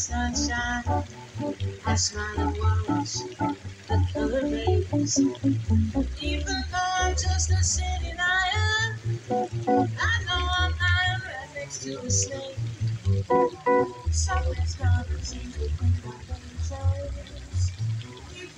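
Live jazz trio: a woman singing into a microphone over plucked upright double bass and electric guitar.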